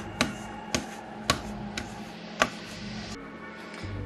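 A spatula knocks against a stainless steel mixing bowl while stirring a stiff, crumbly dough, about two knocks a second, stopping about two and a half seconds in. Soft background music plays underneath.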